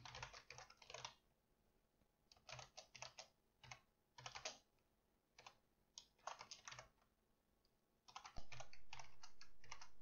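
Faint computer keyboard typing, keystrokes coming in short bursts with pauses between them as a line of code is typed. A steady faint hiss comes up about eight seconds in.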